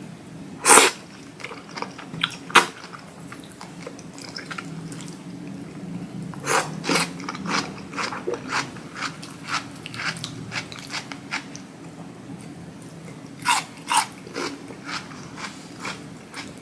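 Close-miked mouth sounds of someone eating spicy ramen: two loud, short slurps of noodles near the start, then a long run of quick wet chewing clicks, and two more sharp slurps near the end.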